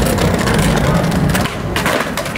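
Skateboard wheels rolling over brick paving, then a few sharp clacks of the board near the end.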